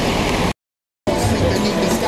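A steady rumbling noise that cuts off abruptly about half a second in, leaving half a second of dead silence, after which background music starts.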